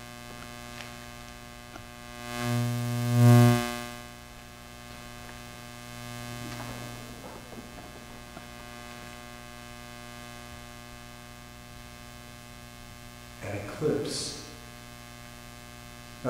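Steady electrical mains hum in the sound system, with a loud swell of hum and noise about three seconds in.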